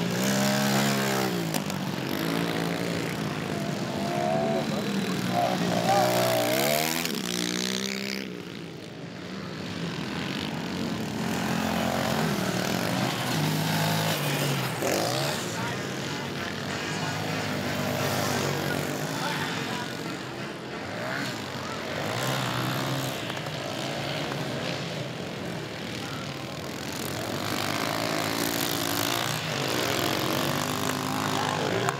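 Several 110cc automatic-clutch youth dirt bikes racing, their small engines revving up and down as they accelerate and back off. The sound dips briefly about eight seconds in.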